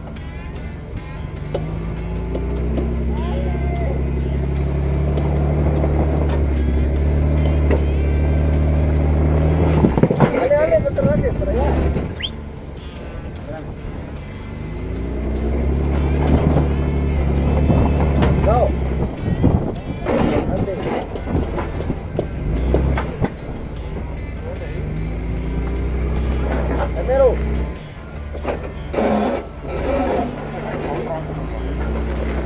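Jeep Wrangler Unlimited engine working under load in three long pulls as the front tyre crawls up onto a boulder. Each pull builds and rises in pitch, with short gaps between them.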